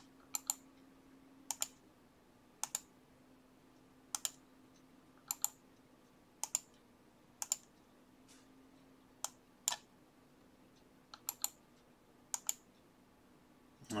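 Faint, sharp clicks of a computer mouse and keyboard, mostly in close pairs, about one every second, as text is selected, copied and pasted into a spreadsheet. A faint low steady hum lies underneath.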